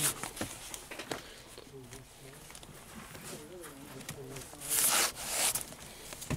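Cardboard LP record sleeves sliding and scraping against each other as they are flipped through in a bin, loudest at the start and again about five seconds in, with a few light knocks. Quieter talking in the background between the flips.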